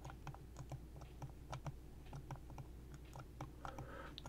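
Faint, irregular light clicks and taps from computer input at a desk, several a second, over a low steady hum.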